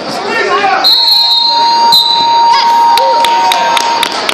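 Wrestling match timer buzzer sounding one steady mid-pitched tone, starting about a second in and lasting about three seconds, with spectators shouting over it.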